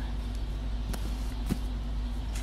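A steady low motor hum, with two faint clicks about one second and one and a half seconds in.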